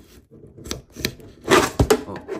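Handling noise from a phone camera being picked up and moved: rubbing on the microphone with a few sharp knocks, loudest in the last half second.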